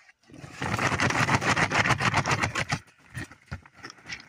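A person's rolling, rattling trilled call to a bison herd, lasting about two and a half seconds, with roughly ten pulses a second, then stopping.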